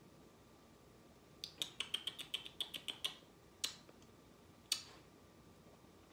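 Faint small clicks: a quick crackling run of them about a second and a half in, lasting a second and a half, then two single clicks.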